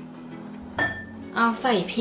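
Glass mixing bowl clinking once as a hand takes hold of it, a single sharp knock with a brief high ring about a second in.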